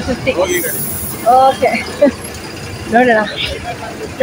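Short snatches of people talking over the steady rumble of buses idling at a busy bus stand. A brief high hiss comes about half a second in.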